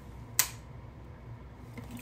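A single sharp plastic click about half a second in, from handling a garment steamer as it is being assembled to switch on.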